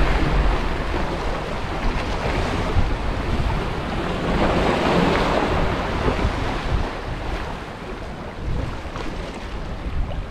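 Sea surf washing against the jetty's rocks, a steady rush of water that swells a little about five seconds in, with wind rumbling on the microphone.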